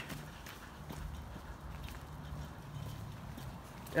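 Footsteps of a person walking, faint scattered steps over a steady low hum.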